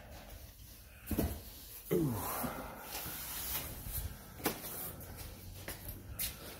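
A few knocks and clicks with a brief falling squeak, handling sounds in a small enclosed space, over low hiss.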